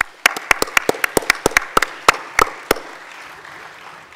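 Audience applause at the end of a talk, with one person's fast, sharp claps close to the microphone standing out over the crowd's clapping. The close claps stop a little under three seconds in, and the applause dies away near the end.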